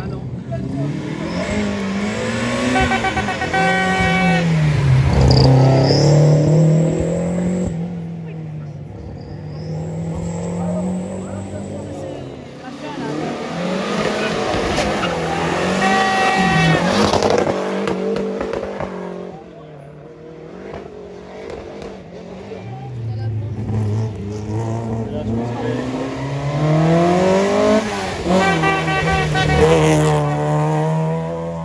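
Rally cars pass one after another through a hairpin, three in all, about ten seconds apart. Each engine revs on the approach, drops away under braking and turn-in, then pulls hard again as the car accelerates out. The last car is a first-generation Volkswagen Golf.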